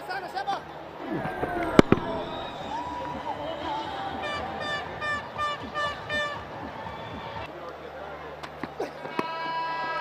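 Cricket stadium crowd ambience with one sharp crack about two seconds in, then a run of short, evenly spaced pitched blasts a little before the middle.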